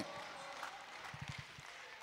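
Faint reverberant room tone of a large hall: the echo of an amplified voice dies away at the start, then a low, even hush with a few soft low thumps about a second in.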